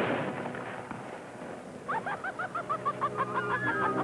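A burst of noise dies away at the start. About two seconds in, a cartoon chick's rapid high peeping begins: a quick run of short cheeps, about five a second.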